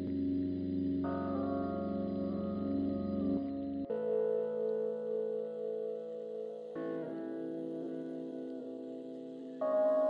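Live-coded electronic music from TidalCycles: sustained, held chords whose harmony shifts abruptly about every three seconds.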